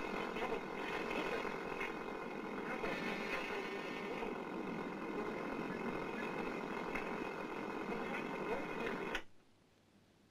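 Television broadcast sound: a steady noisy rush with a hum and indistinct voices, cutting off abruptly about nine seconds in.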